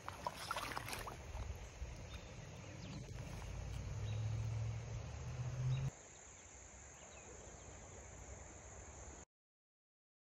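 Outdoor river-shore ambience. Low wind-like noise on the microphone, with a few clicks and handling sounds in the first second, builds until about six seconds in. It then cuts abruptly to a quieter, steady hiss.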